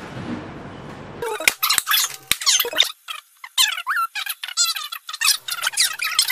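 Dry-erase marker squeaking on a whiteboard in quick, dense strokes, starting abruptly about a second in after a faint room hum, with short pauses between runs of writing.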